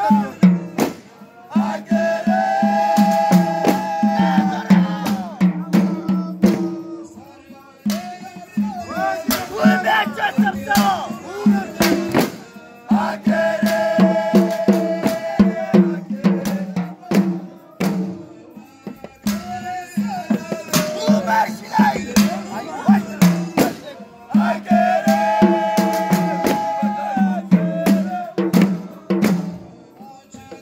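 A group of men chanting a Moulidi (Mawlid) devotional song together over a fast, steady drum beat and sharp percussive hits. A long held sung phrase comes back about every eleven seconds.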